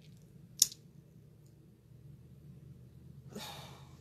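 A woman's mouth click about half a second in, then a soft audible breath near the end, during a pause in her talk, over faint steady room hum.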